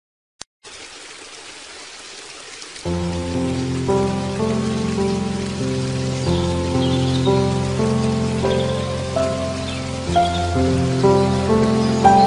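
Relaxing background music with nature sounds: a steady rain-like hiss of water, joined about three seconds in by soft, slow instrumental music with sustained notes, and faint high chirps later on.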